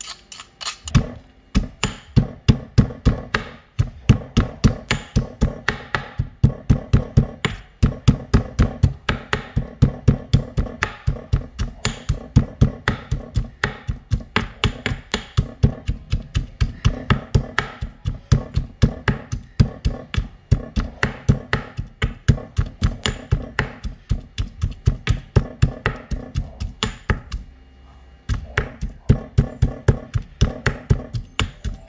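Marble pestle pounding chopped fresh turmeric in a marble mortar: repeated dull knocks of stone on stone, about three a second, starting about a second in, with a brief pause near the end.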